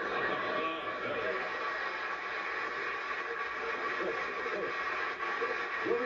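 Studio audience laughing and applauding, rising quickly at the start and then holding steady.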